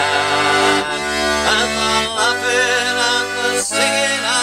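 A man singing a slow folk ballad, accompanied by a button accordion playing sustained chords that change about two seconds in and again near the end.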